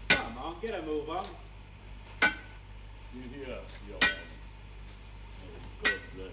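A railway wheel-tapper's hammer strikes carriage wheels four times, about two seconds apart, each blow a short metallic clink that rings briefly. Men's voices call between the strikes.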